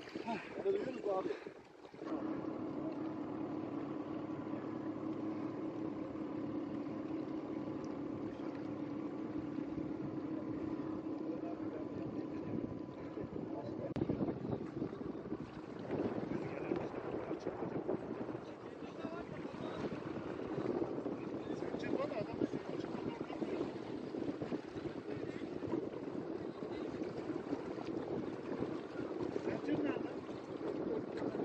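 Someone laughs briefly at the start. Then a steady hum of several level tones runs under wind and water noise until about halfway through, after which the sound turns rougher and more uneven, with faint voices.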